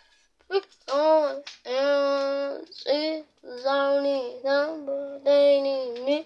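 A young voice singing an unaccompanied, wordless ad-lib: a string of held notes in short phrases, some sliding up or down in pitch, starting about half a second in.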